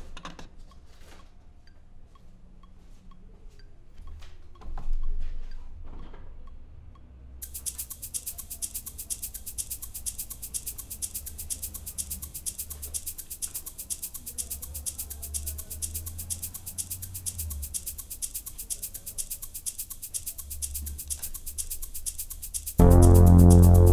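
A low synth bass line from the DRC polyphonic synthesizer, played on a keyboard, quiet at first with a few clicks. About seven seconds in, a fast, steady high percussion pattern like a shaker or hi-hat joins it and keeps going.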